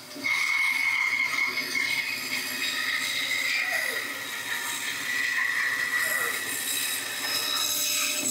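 Bandsaw running with its blade cutting through a cherry burl log: a steady high whine over the hiss of the cut.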